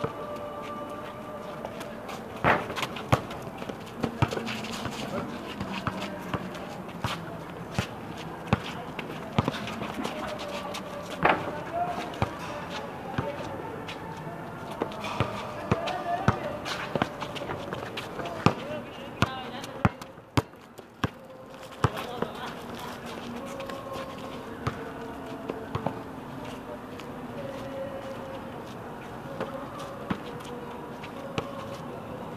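A basketball bouncing on an outdoor court in irregular sharp thuds, amid players' voices calling out.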